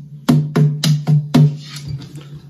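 Fingers tapping the body of a Lava U carbon-composite ukulele, picked up by its built-in microphone so each tap sounds as an amplified drum hit. Five quick hits in a run, about four a second, with the last one fading away.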